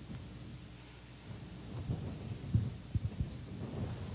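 Low rumbling handling noise with a few soft thumps between two and a half and three seconds in, as the priest's hands work on the missal and the altar near his clip-on microphone.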